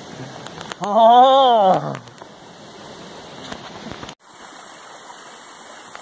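A person's drawn-out vocal sound, about a second long, rising and then falling in pitch, over a steady rushing background noise. The background noise changes abruptly about four seconds in.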